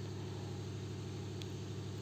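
A steady low hum, even in level, with no other events.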